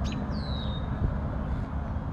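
A bird's single short whistle, falling slightly in pitch, over a steady low rumble of outdoor background noise.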